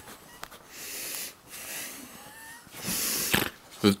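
A person's breathing close to the microphone: short, soft, hissy breaths about once a second.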